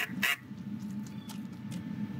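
Cordless drill driving screws into metal joist hangers, in sped-up footage, with a couple of sharp clicks right at the start, over wind on the microphone.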